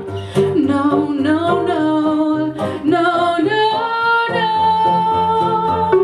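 Live pop song: a woman singing over guitar and electric piano, her line ending in a long held note from about four seconds in.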